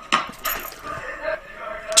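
A sudden thump of a sneaker landing on a hard floor just after the start, followed by quieter scuffing and shuffling.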